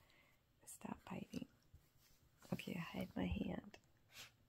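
A woman's soft, whispered voice in two short stretches, about a second in and again in the second half.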